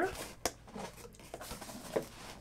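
One sharp click about half a second in, then a few faint small handling noises: objects being moved about on a desk.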